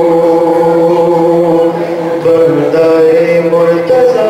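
A man's voice chanting devotional verse into a microphone, holding long, steady notes. The tune steps down and back up about halfway through.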